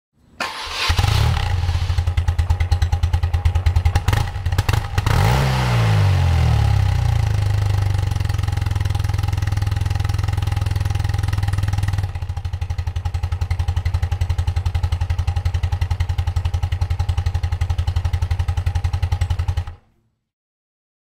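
Air-cooled BMW boxer-twin motorcycle engine starting and catching within a second, then idling with an even beat. About five seconds in it is revved once, the pitch rising and falling back to idle. It runs on at idle until it stops abruptly near the end.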